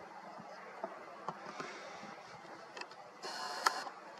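A few faint clicks, then near the end a short electric whir of a camera's zoom motor, lasting under a second, with a sharp click in the middle of it.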